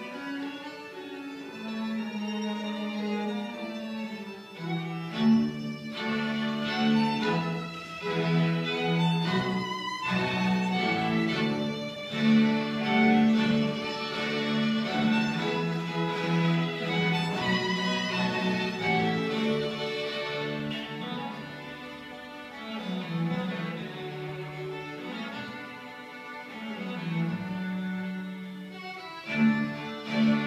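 A small live ensemble of violins playing a piece together, with long bowed notes layered in harmony and changing every second or so.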